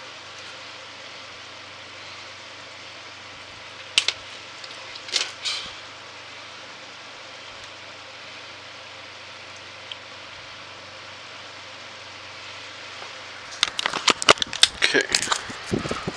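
Stripping and handling a box fan's lead wires: a few sharp clicks about four and five seconds in, then a dense run of clicks and rustles near the end, over a steady low hum and hiss.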